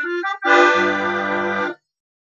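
Bayan (button accordion) playing a sustained seventh chord, the dominant of C major voiced D–F–G–B. The chord is held for just over a second and cut off sharply, after a brief sound at the start.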